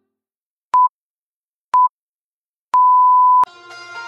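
Interval-timer countdown beeps: two short beeps at the same pitch a second apart, then a longer beep lasting under a second that marks the start of the next 30-second exercise interval. Music comes in right after the long beep.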